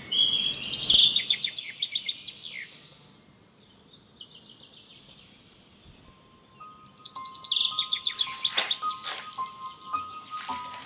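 Birds chirping in rapid trilled series, loudest about a second in, fading away by about three seconds and starting again around seven seconds. Near the end, steady high tones and a few sharp clicks join them.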